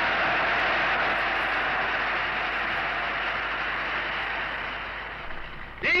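Crowd applause on an old archival speech recording: a steady, noisy wash that slowly dies away over several seconds. A man's voice starts speaking again at the very end.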